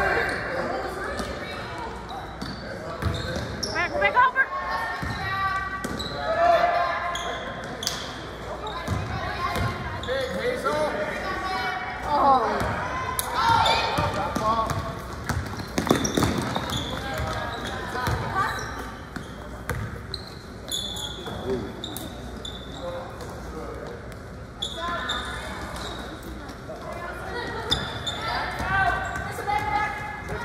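A basketball bouncing on a hardwood gym floor as players dribble up the court. Voices of players and spectators call out over it, echoing in the gym.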